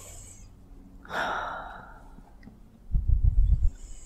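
A woman under hypnosis breathes out audibly in a long sigh that fades over about a second, starting about a second in. Near the end comes a short stretch of low, muffled rumbling bumps, the loudest sound here.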